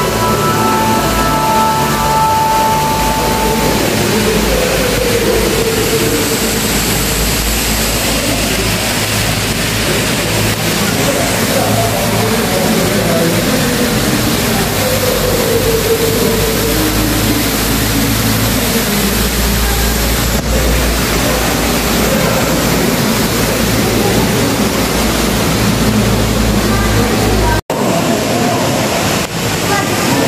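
Loud, steady rushing noise, with a music track fading out in the first few seconds.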